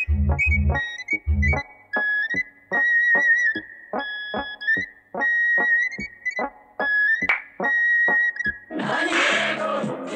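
Cartoon score music: short staccato keyboard notes under a held high tone, with three low bass thuds in the first second and a half. A rougher, noisier sound comes in near the end.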